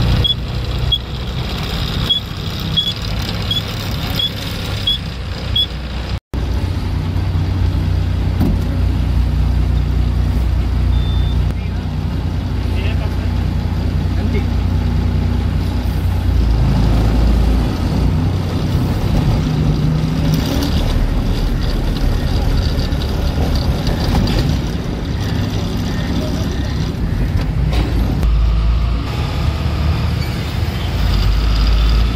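Lorry's diesel engine running, heard from inside the cab, with road and traffic noise around it. There are faint high ticks, about two a second, for the first few seconds, and the sound cuts out briefly about six seconds in.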